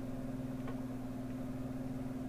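Exhaust fan running steadily and pushing air through a metal duct: an even electric hum with a low tone and its overtone, with a few faint clicks.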